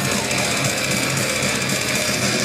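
Melodic death metal band playing live, recorded from the crowd: loud distorted electric guitars over rapid-fire drumming.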